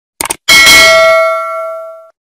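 A quick triple click, then a single bell ding that rings out and fades over about a second and a half: the notification-bell sound effect of a subscribe-button animation.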